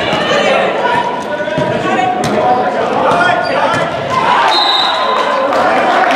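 Volleyball rally in a gymnasium: the ball is struck several times, sharp slaps off hands and forearms echoing in the hall, with players' voices calling over it.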